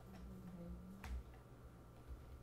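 A single faint click about a second in, over a low steady hum.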